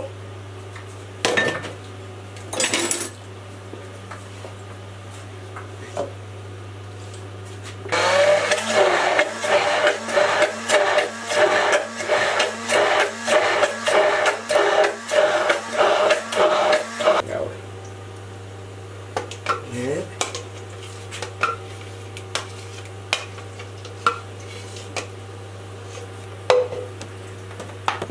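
Hand-held immersion blender running for about nine seconds in a plastic beaker, blending Cabrales blue cheese with cream; its sound pulses rhythmically about twice a second and cuts off. A few light knocks and clicks of handling come before and after it.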